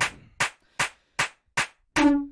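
Electronic drum-machine loop stripped down to a sparse beat: a short, sharp percussive hit about two and a half times a second, after a pitched synth note fades out at the very start.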